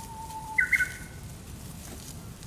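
Shiba Inu puppy giving a faint thin whine, then a short, loud, high-pitched squeal about half a second in.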